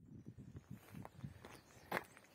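Faint footsteps on gravel, with a sharp click near the end.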